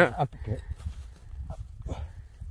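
A spoken word breaking off, then a steady low rumble with a few faint, brief vocal sounds.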